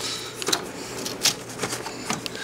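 A handful of sharp, irregular clicks and taps of hand-handled plastic parts and tools around the cabin filter pan of an engine bay.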